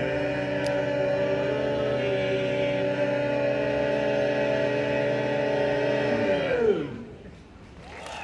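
Barbershop quartet of men's voices holding one long a cappella chord. Near the end the voices slide down together and the chord stops.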